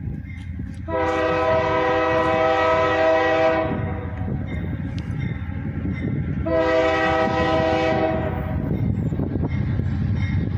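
Freight locomotive's air horn sounding two long blasts of a grade-crossing signal, the first about three seconds and the second about two, as a chord of several tones over the low rumble of the approaching train.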